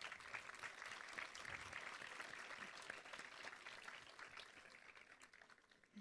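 Faint audience applause, a dense patter of many hands clapping that starts suddenly and dies away over about five seconds.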